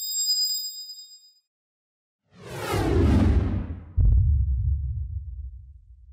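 Logo sound effect: a bright chime rings and fades within about a second and a half. After a short silence, a whoosh falls in pitch and lands on a deep boom about four seconds in, which rumbles and slowly fades.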